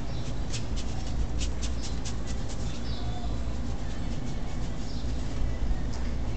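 Bristle brush scratching on canvas in a quick run of short strokes during the first two or three seconds, with a few fainter strokes later, over a steady low rumble.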